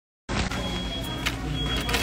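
Steady low background hum with a thin high whine above it, starting abruptly a moment in, with two brief clicks.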